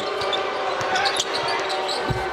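Basketball game sound in an arena: a steady crowd murmur, a basketball bouncing on the hardwood court, and a few short high squeaks of sneakers.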